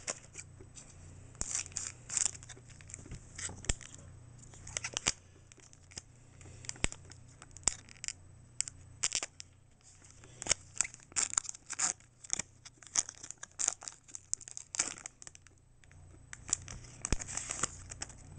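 Foil wrapper of a Pokémon Trading Card Game booster pack being torn open and crinkled by hand: a long run of irregular, sharp crackles.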